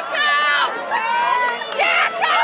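Several spectators shouting and cheering at once, with overlapping voices and some drawn-out high yells.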